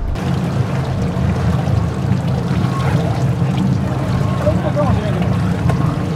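Fishing boat's engine running steadily with water splashing and trickling against the hull, and faint voices in the background.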